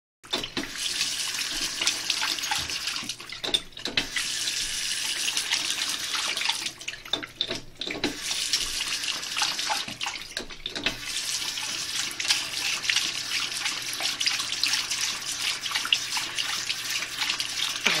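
Bathroom sink faucet running in a steady stream. It drops away briefly about three times and comes back, as the tap is shut off and turned on again.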